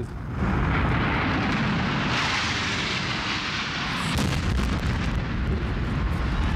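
Roar of a Boeing 767 jet airliner flying in low and fast, swelling from about half a second in and loudest a couple of seconds later. It ends in a sudden boom about four seconds in as the plane strikes the World Trade Center's south tower, followed by the low rumble of the explosion.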